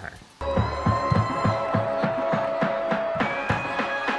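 Dance-routine music with a steady beat and held notes, starting suddenly about half a second in.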